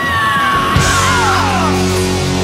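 Heavy rock music: a long, high yelled note that slides down in pitch, over a heavy sustained low chord that comes in about half a second in.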